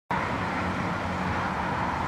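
Lännen 8600C backhoe loader's diesel engine running steadily under working load as the backhoe arm lifts, with a steady higher hum over the engine note.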